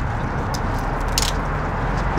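Steady low rumble of outdoor street traffic, with two short, sharp clicks, one about half a second in and one a little over a second in.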